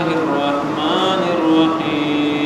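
A solo voice chanting in long, held melodic notes that bend slowly in pitch, over a steady background hiss.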